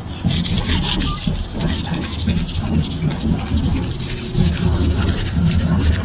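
A hand rubbing a paper poster down onto a metal lamppost: continuous uneven rubbing and scraping of paper against metal.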